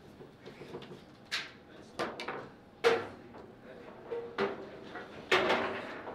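Foosball table knocks and clatters: half a dozen sharp hits of the ball and metal rods against the table, the loudest about three seconds in and a longer rattling clatter near the end.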